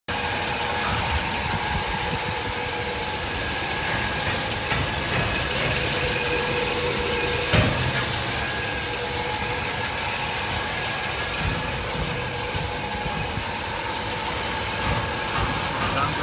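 A 1954 Chrysler's FirePower Hemi V8 idling steadily, with a steady whine over the engine note. A single sharp knock comes about halfway through.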